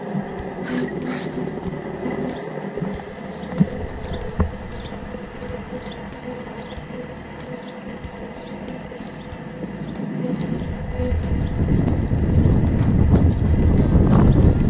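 Footsteps at a steady walking pace, heard as regular soft ticks. Wind on the microphone builds into a rumble about ten seconds in.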